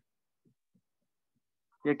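Near silence in a pause between a man's speech; his voice comes back near the end.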